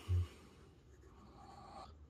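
Medium fountain-pen nib of a Cross Century II faintly scratching across grid notebook paper as words are written, with a short low thump right at the start.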